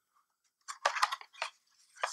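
Paper packaging crinkling as it is handled: a short run of crackles lasting a little under a second in the middle, with quiet before and after.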